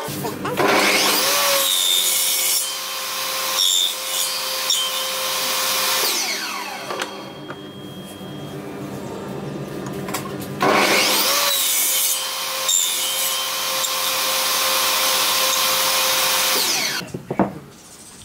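Table saw running and cutting into the end of a wooden block, in two loud passes of about six seconds each with a quieter stretch between them.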